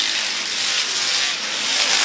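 A pack of dirt-track stock cars racing around the oval, their engines blending into a steady wash of noise with no single engine standing out.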